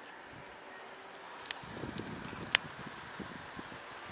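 Faint wind on a phone microphone outdoors, a quiet hiss that turns into an uneven low buffeting from a little before halfway, with a few light clicks, the loudest about two and a half seconds in.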